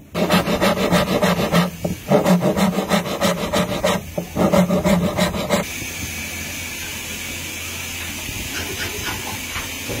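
Rapid back-and-forth rubbing strokes on a hollow wooden acoustic guitar, about seven a second, with the body ringing under each stroke. About halfway through they give way to a steady scraping hiss as a blade is drawn over the rosewood fretboard.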